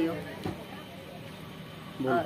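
A woman's voice ending a word, then a steady low background hum with no distinct event.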